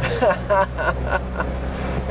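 Isuzu Trooper's turbo-diesel engine pulling steadily in second gear up a hill, heard from inside the cab; the heavy truck labours on the climb.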